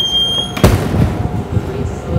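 A house door shutting with a single sharp bang about two-thirds of a second in, just after a brief high squeak.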